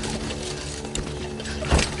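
Film soundtrack: a low, steady, droning hum with a few faint clicks, and a single heavy thud about three-quarters of the way through.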